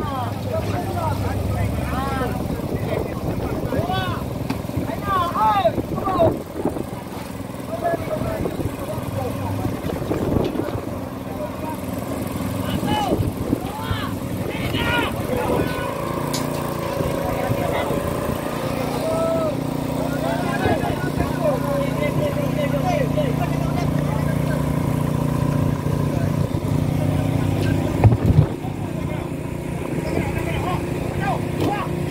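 Fishing boat's engine running steadily under crew shouting and calling to one another while fish are brailed aboard, with one sharp knock near the end.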